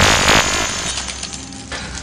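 Cartoon laser-blast sound effect: a loud noisy burst with a thin high whine, fading away over a couple of seconds above a low hum.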